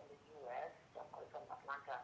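Faint, indistinct speech with a thin, narrow telephone-line sound, coming in short broken phrases.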